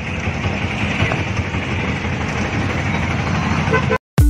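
Mixed road traffic heard from inside an open-sided auto-rickshaw: motorcycle and vehicle engines running as they move off, with horns honking.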